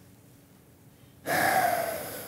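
A man's sharp, audible intake of breath, a gasp-like breath about a second in, carrying a faint voiced tone that falls slightly in pitch as it fades.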